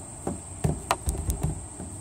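A steady high-pitched insect drone, typical of summer insects in trees, with about six sharp, irregular clicks or taps over it.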